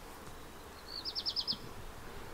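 A short, high trill of about six quick chirps from a small bird, about a second in, over faint background noise.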